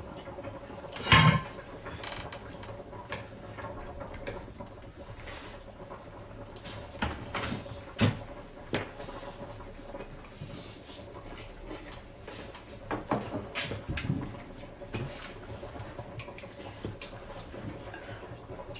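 Chopsticks and tableware clinking and knocking against bowls, plates and a metal hot pot in scattered, irregular clatters, the loudest about a second in. A faint steady hum runs underneath.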